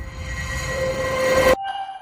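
Electrolux audio logo: a rising whoosh with a few held tones swelling steadily louder, cut off sharply about one and a half seconds in, then a short ringing tone that fades away.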